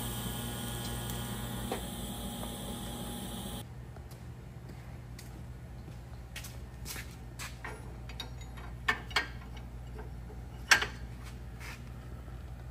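TIG welding arc, a steady buzzing hiss, cutting off suddenly about three and a half seconds in. Then a few sharp metallic clanks of steel parts being set on a Hossfeld bender, the loudest two near the end.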